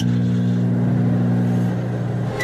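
A steady, low-pitched droning tone with an even buzz of overtones. It starts abruptly and holds unchanged for about two seconds before cutting off.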